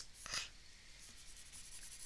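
Faint scratching of a stylus moving over a drawing tablet as handwritten equations are erased, with one brief louder scrape near the start.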